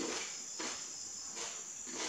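Close-miked chewing of food with the mouth closed, about two chews a second, each a short crunchy stroke. A steady high-pitched tone runs under it throughout.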